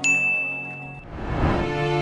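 A single bright ding sound effect that rings on one clear high note for about a second, marking the change to the next quiz question. Soft background music with long held notes comes back in during the second half.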